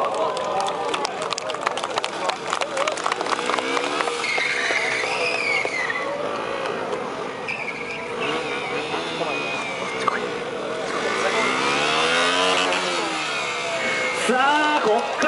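KTM 125 Duke's single-cylinder engine revving up and down repeatedly during stunt riding, with a strong rise and fall in revs near the end. A brief tyre squeal about five seconds in.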